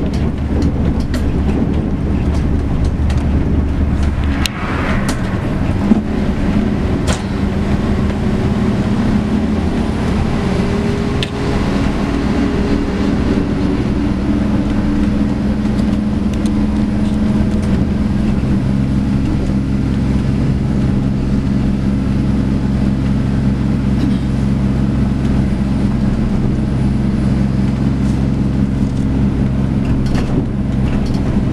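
Busscar El Buss 340 coach on a Mercedes-Benz O-500M chassis, heard from inside while driving: a steady engine drone mixed with road noise. The engine's tone shifts about four or five seconds in, then holds steady, with a few brief knocks or rattles along the way.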